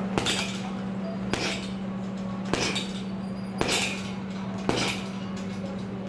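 Boxing gloves striking a heavy punching bag: five jabs, each a sharp thud, about one a second, over a steady low hum.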